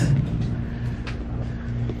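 Shopping cart rolling across a store floor: a steady low rumble with a faint hum and a light knock about a second in.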